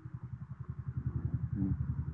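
A small engine running steadily in the background, heard as a rapid, even low throb in the pause between words.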